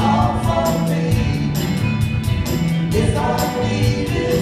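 Live band playing a song: strummed acoustic guitars over bass and drums, with cymbal strokes marking a steady beat.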